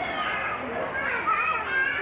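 High-pitched children's voices talking and calling out among other visitors.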